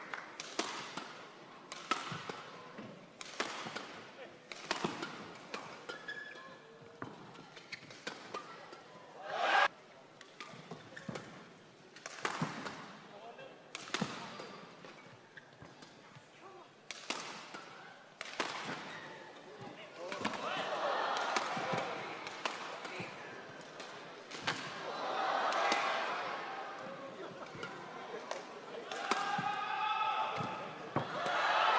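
Badminton rally: rackets striking the shuttlecock in quick, irregular sharp hits, one louder stroke about nine seconds in. Crowd noise swells twice in the second half.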